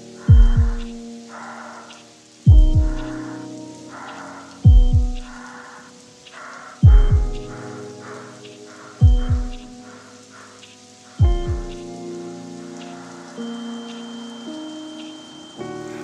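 Instrumental intro of a dark hip-hop beat: a deep bass hit that falls in pitch about every two seconds, over sustained low chords and a rain-like hiss. The bass hits stop for the last few seconds, leaving the chords.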